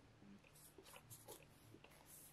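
Near silence with a few faint, brief rustles and brushes as a MacBook Air is lifted out of its cardboard box tray.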